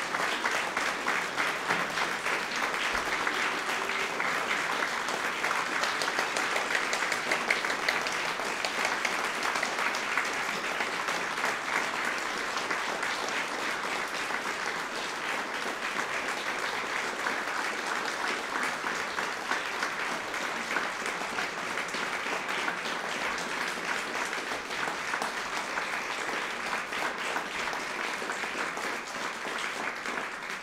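Audience applauding steadily, a dense sustained patter of many hands clapping that eases slightly toward the end.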